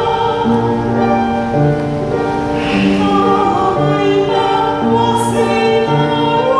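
A woman singing in classical operatic voice in Quechua, accompanied by a grand piano: long held notes over sustained piano chords in a slow Andean lyric song.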